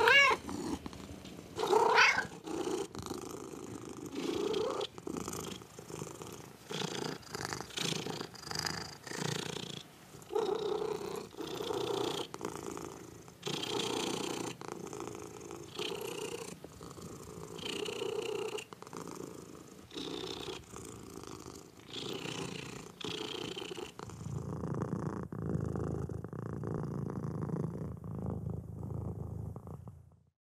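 Domestic cat purring and calling: a loud meow at the start and another about two seconds in, then a run of shorter purring calls about one a second, ending in a lower, steadier purr for the last several seconds.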